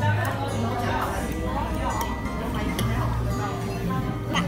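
Background music with long held bass notes, under murmured voices and a few light clinks of cutlery against a plate.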